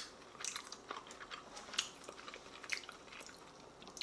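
Faint, close-up chewing of a mouthful of roast pork shoulder: soft, irregular wet clicks and smacks of the mouth.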